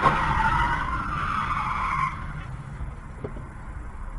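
Car tyres squealing in a hard skid during a near-collision, a wavering high squeal that stops about two seconds in. Under it runs a steady low road rumble.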